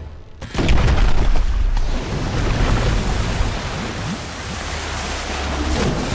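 Film sound effects of the Kraken's attack: after a brief hush, a sudden loud crash about half a second in, then a heavy, sustained low rumble that swells again near the end, with film score underneath.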